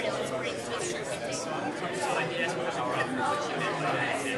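Many people talking at once in small groups: steady overlapping chatter with no single voice standing out.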